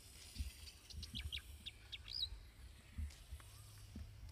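Birds chirping: a quick run of short, high chirps about a second in, ending in a whistled note that rises and falls, over a faint low rumble.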